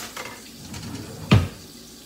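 A single loud knock about one and a half seconds in, from hands working at a countertop blender, with faint handling rustle before it.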